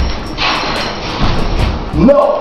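Rough, hissy sound of home-video footage in a room, with rustling and low thumps from people moving about, while music faintly carries on underneath.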